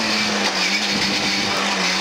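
Lada 2107 rally car's four-cylinder engine heard from inside the cabin, running steadily at speed, its pitch sinking slightly through the two seconds.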